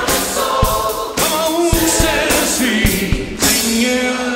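Live rock band playing with singing voices over steady drum hits, moving through the closing bars of a song with a loud accented hit near the end.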